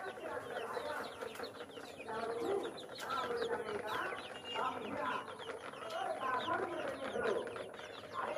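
A flock of young chicks peeping constantly in quick, short falling chirps, with hens clucking lower beneath them.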